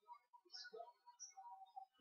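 Near silence: faint room tone with a few soft, scattered small sounds.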